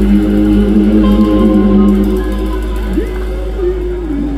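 Live band music: electric guitars and bass holding long sustained notes over a deep, steady low end, with no vocal line.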